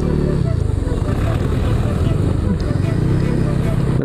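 Yamaha NMAX 155 scooter's single-cylinder engine running steadily while riding, through an aftermarket RS8 exhaust pipe.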